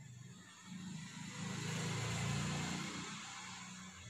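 A motor vehicle passing by: a low engine drone and hiss swell to a peak about two seconds in, then fade away.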